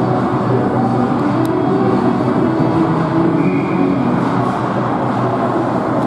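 Steady, loud ice-rink din during a hockey game, the general noise of the arena and spectators, with a single sharp click about a second and a half in.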